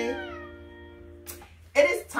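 The last held note of a sung children's song, the voices sliding down in pitch and the sound fading out over about a second and a half. Near the end a small child gives a short high squeal.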